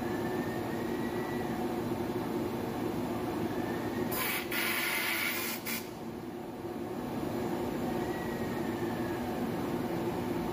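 Plastic film blowing machine running with a steady mechanical hum, its film winder turning. About four seconds in, a loud hiss cuts in for under two seconds and stops suddenly.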